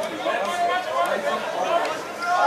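Indistinct chatter of several voices talking and calling over one another, no single speaker clear.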